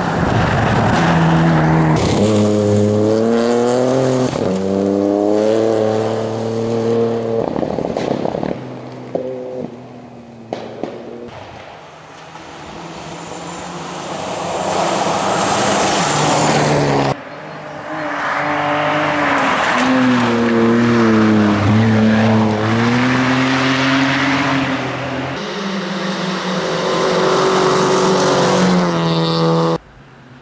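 Rally cars at full throttle on a gravel stage. The engines rev high and drop in steps through gear changes as each car passes, with gravel being thrown up. A little over halfway the sound cuts off abruptly and another car passes.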